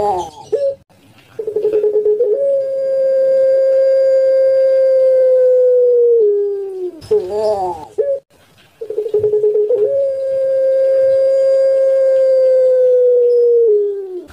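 Puter pelung (a Barbary ringneck dove bred for its long coo) cooing twice: each coo begins with a short stuttering note, then rises to a long held tone of about four seconds that sinks slowly and drops at the end. A short, rougher note comes between the two coos about seven seconds in.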